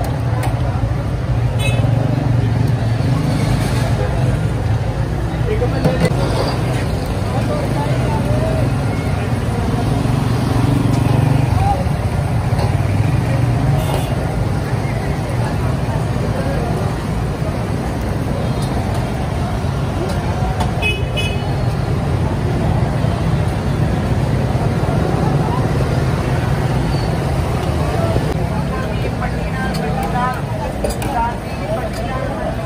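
Busy street-market din: background chatter of people over passing motorcycle and car traffic, with a brief vehicle horn toot about two-thirds of the way through.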